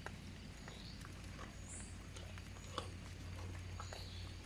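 An agouti's forepaws digging and patting at wet soil and dead leaves as it buries food: faint, irregular soft taps and scrapes, with one sharper tap near three seconds in, over a steady low hum.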